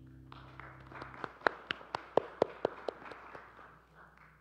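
The last held notes of the music fade out, then a small congregation applauds, with about eight sharp claps, about four a second, standing out from the rest before the applause dies away near the end.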